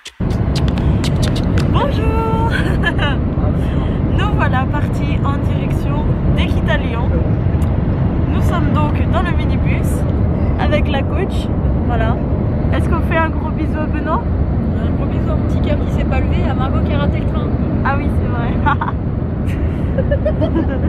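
Steady low rumble of a minibus driving on the road, heard from inside the passenger cabin, with passengers' voices over it.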